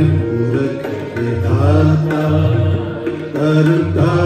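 Kirtan music: harmoniums playing a held, gently bending melody over a steady tabla rhythm with deep bass-drum strokes.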